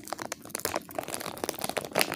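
Foil packaging crinkling and crackling as it is handled close to the microphone: a dense, irregular run of sharp little crackles.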